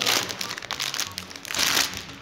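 Foil snack-cake wrapper crinkling as it is pulled open by hand, in two loud bursts: one right at the start and another about a second and a half in.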